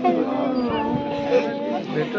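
A woman wailing in grief: a long, wavering, drawn-out cry, over the voices of a crowd.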